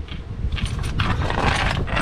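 Mechanical clatter and rattling: a quick run of short clicks and scrapes that starts about half a second in.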